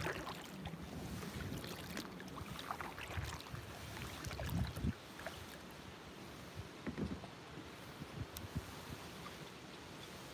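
Kayak paddling in calm water: soft, irregular splashes and drips of paddle strokes, with a few low knocks, the loudest about halfway through.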